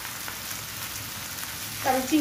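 Small shrimp frying in oil with spices in a nonstick pan: a steady sizzle.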